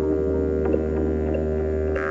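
Live electronic synthesizer music: a steady low bass drone with sustained tones held above it and a few faint ticks.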